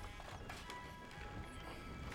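Soft film score of held notes, with a horse's hooves clopping faintly underneath.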